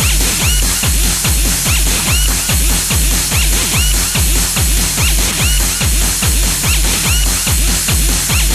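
Techno track playing: a fast, steady kick drum, each beat dropping in pitch, with short high synth blips repeating over it.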